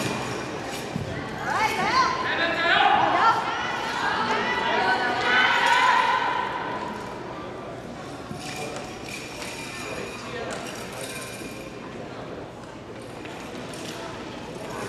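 Indistinct voices echoing in a large hall, loudest in the first half, with scattered thuds and knocks.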